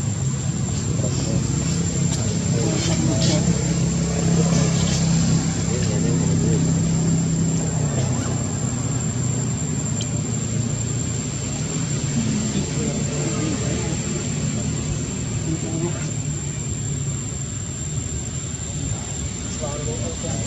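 A steady low hum, a little louder in the first half, with faint voices over it.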